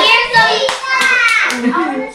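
A young child's high-pitched voice calling out in long, wavering, wordless sounds, with a few sharp hand claps about a second in.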